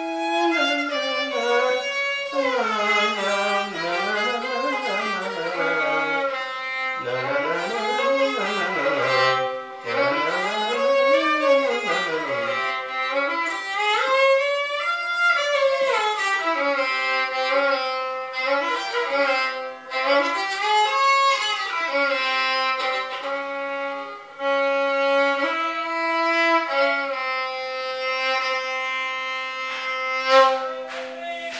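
Solo violin playing a Carnatic melody in raga Kalyana Kesari, a five-note janya of Mayamalavagowla (Sa Ri1 Ga3 Pa Dha1). The bowed line sweeps up and down through wide slides between notes, with some notes held steady.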